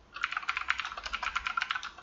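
Computer keyboard typing: a quick, even run of keystrokes that starts just after the beginning and stops near the end.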